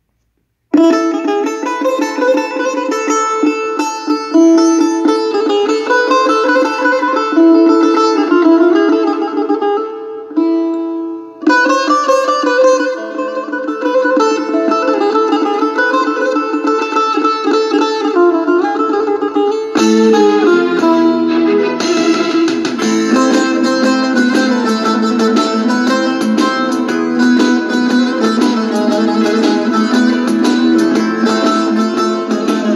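Music from a CD playing through the small built-in speakers of a Sony CFD-S03CP portable CD/cassette boombox, with plucked string instruments and almost no deep bass. It starts about a second in, after a moment of silence, and grows fuller about twenty seconds in.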